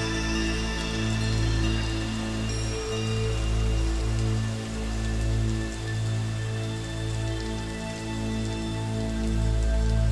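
Slow, calm background music of long held notes over a deep steady bass, gently swelling and fading. A steady rain-like hiss is layered beneath it.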